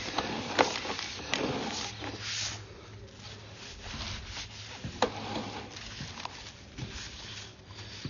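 Sewer camera push cable being pulled back up through a cleanout pipe: a rubbing, scraping noise with a few sharp clicks and knocks over a low steady hum.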